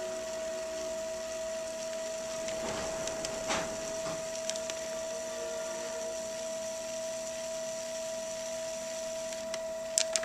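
Electric pottery wheel running with a steady tone while a loop trimming tool scrapes the foot of a leather-hard clay cup, peeling off ribbons of clay, with a brief louder scrape about three and a half seconds in.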